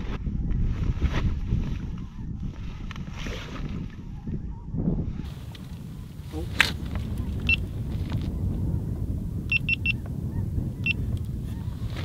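Wind buffeting the microphone as a steady low rumble, with a few short high-pitched beeps a little past the middle.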